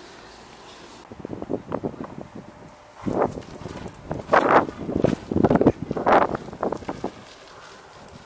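A man's footsteps and the knocks and scuffs of a Cannondale 29er hardtail mountain bike as he mounts it and rides off over paving stones. The noises come in an irregular run, loudest in the middle, and drop away near the end as he rides off.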